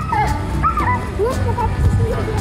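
Young children squealing and shrieking in high, gliding voices as they play, over background music with a steady bass.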